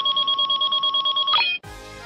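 Edited sound effect: a steady high electronic tone pulsing rapidly, like an alarm ringing, which cuts off about one and a half seconds in. A short, soft music cue of sparse notes follows.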